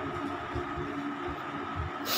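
A quiet pause holding a faint, steady hum and scattered low rumbles, with no distinct event standing out.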